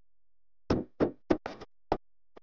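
A quick run of about six sharp knocks, irregularly spaced, starting just under a second in, over otherwise silent audio.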